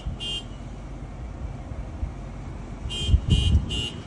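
The 2015 Toyota Avalon's cabin warning chime beeping rapidly, about four short beeps a second. The run stops just after the start, and a new run begins near the end. Low thuds of handling noise come along with it.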